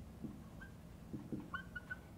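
Marker writing on a whiteboard: soft taps of the tip against the board and several short, faint squeaks, mostly in the second half.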